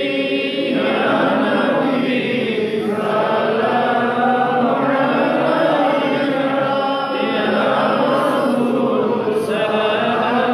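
A man chanting an Islamic recitation in a slow, drawn-out melody, with long held notes.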